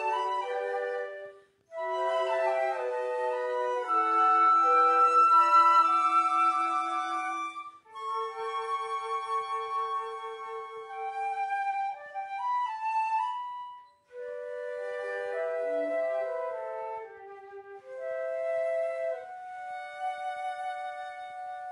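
A woodwind quartet of three flutes and a clarinet playing together in held, sustained notes, in phrases with short breaks about one and a half, eight and fourteen seconds in.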